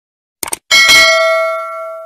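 Notification-bell sound effect for a subscribe animation: a quick double mouse click, then a bright bell ding that rings out and fades away.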